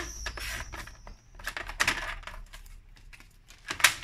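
A sliding paper trimmer cutting a sheet of cardstock: a few scraping passes of the cutter along its rail, then a sharp click near the end as the trimmer's clamping arm is lifted.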